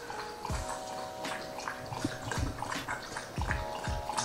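A pet drinking water, with wet lapping and a few low gulps at irregular intervals.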